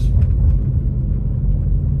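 Steady low rumble of a car's engine and road noise, heard from inside the cabin while the car drives slowly along a street.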